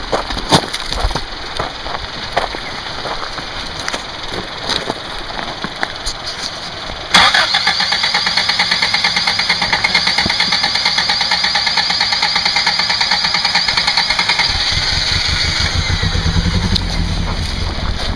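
Off-road pickup's small four-cylinder engine working on a rock ledge, with gravel crackling under the tyres. About seven seconds in, a loud, rapid, even pulsing sets in, about six beats a second, and a deeper engine rumble builds near the end.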